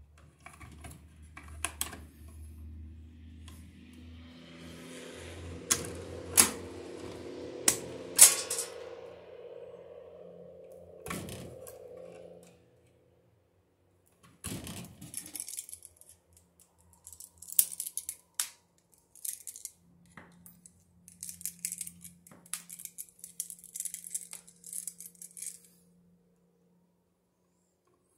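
Hand-tool work on electrical wire: sharp clicks and scraping of wire strippers and copper wire being handled at a plastic switch box. A steady low hum runs under the first half and cuts off abruptly about halfway through.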